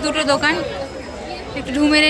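People talking close by over general crowd chatter, with one voice rising loudest near the end.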